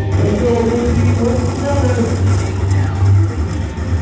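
Indistinct voices over background music.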